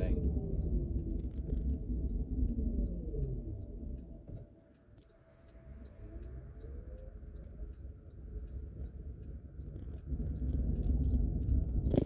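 Inside a moving car: road rumble with a whine that falls in pitch as the car slows to a stop. It goes nearly quiet for a moment about four to five seconds in, then the whine rises as the car pulls away again.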